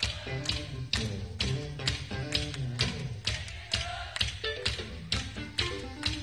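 Live funk band playing an instrumental groove from a soundboard recording: sharp drum strikes about twice a second over a moving bass line and higher melodic notes, with no vocals.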